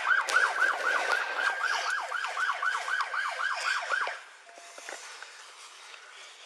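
Emergency vehicle siren sounding a fast yelp, rapid rising-and-falling sweeps about three or four a second, which cuts off about four seconds in.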